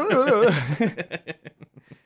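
A man laughing: a high, wavering laugh that breaks into quick short pulses, about eight a second, growing fainter until they die out near the end.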